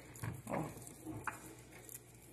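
Faint soft, wet handling of raw chicken as fingers pull the boned thigh meat away from the bone, with a small click about a second in.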